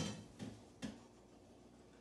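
Two light knocks, about half a second apart, as browned sausage is dumped from a pot into a colander in the sink. Then faint room tone.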